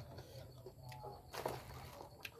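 Birds calling in the background, short tonal calls about a second in, over a low steady hum, with one brief noisy rustle about one and a half seconds in.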